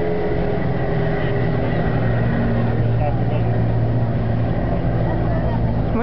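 An airplane's engine drone fading away just after a low pass, its pitch still falling as it recedes. A steady low rumble carries on underneath.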